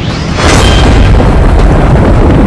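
Anime sword-strike impact sound effect: a sudden, loud boom about half a second in, followed by a continuing heavy rumble.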